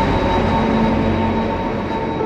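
A loud, steady rumbling noise with a faint high ringing tone running through it, easing off slightly toward the end: a transition sound effect laid over an animated chapter change.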